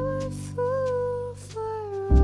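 Slow, gentle song: a woman humming a wordless melody over sustained backing chords.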